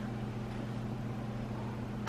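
Quiet room tone with a steady low hum and no distinct event.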